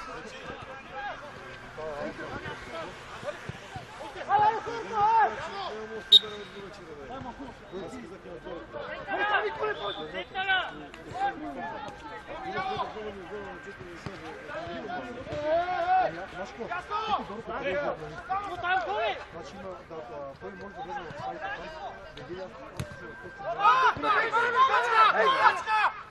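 Men's voices shouting and calling to each other across an outdoor football pitch, louder near the end, with one sharp knock about six seconds in.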